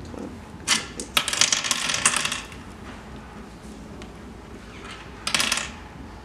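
Oware counters clicking into the hollowed pits of a wooden oware board as a player sows them. There is a quick run of clicks about a second in, lasting about a second and a half, then another short clatter of counters near the end.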